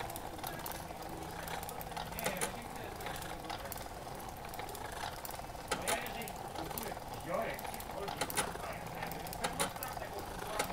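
Steady faint mechanical whir with scattered light clicks from a running home-built electromechanical installation, with a low hum that comes and goes.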